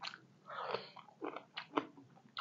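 A person chewing a mouthful of food close to the microphone, with a run of sharp mouth clicks and smacks in the second half.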